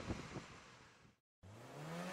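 Faint outdoor background fading out, a moment of silence, then near the end a car engine starting to rev, rising in pitch and growing louder.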